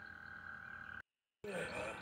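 Faint outdoor background with a steady high-pitched tone, broken about a second in by a short gap of total silence where two clips are joined; a different faint background follows the gap.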